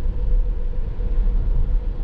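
Steady cabin noise inside a Tesla Model S Plaid driving on a rain-soaked road: a low, even rumble from the tyres and the wet road, with a faint steady hum above it.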